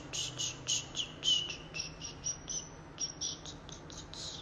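A quick, uneven run of short high chirps, about four a second, some with brief falling glides.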